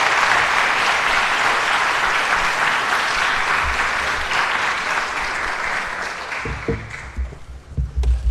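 Audience applauding steadily. The clapping dies away near the end, with a few low thumps.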